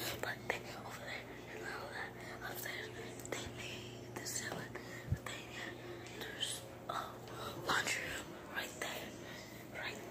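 Children whispering while hiding in a quiet room, with soft rustles and a single low thump about five seconds in, over a faint steady low hum.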